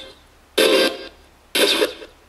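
Home-built ghost box sweeping through radio stations, its speaker putting out short chopped bursts of radio sound about a second apart, with quiet gaps between them.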